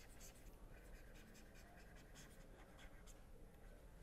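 Faint, irregular scratches and taps of a stylus writing on a tablet screen, over a low steady room hiss.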